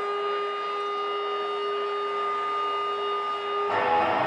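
Electric guitar feedback from the amplifier: a single steady, unwavering tone with a higher overtone, held for over three seconds. Near the end it gives way to electric guitar strumming.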